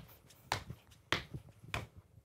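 Sneakers landing on a hard studio floor as a person hops on one leg over mini hurdles: a few short thuds, roughly half a second apart.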